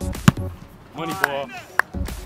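A single sharp thud about a third of a second in, a boot striking an Australian rules football as it is kicked, over music with a beat and a singing voice.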